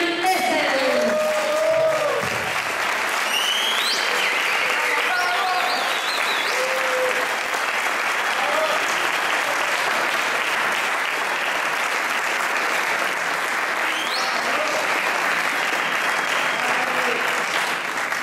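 Audience applauding steadily, with two short rising whistles partway through.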